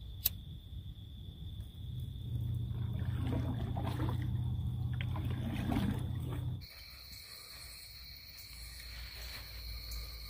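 Crickets trilling steadily in the night. A sharp click comes just after the start, then a low rumbling, roar-like sound swells for about four seconds and cuts off suddenly, leaving the insect trill.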